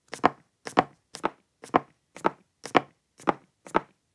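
Eight footsteps on wooden stairs, about two a second: a single wood footstep sound effect repeated, each copy varied in pitch and tone by a randomizer, so that the steps differ slightly. One of them is shifted a little too far in pitch.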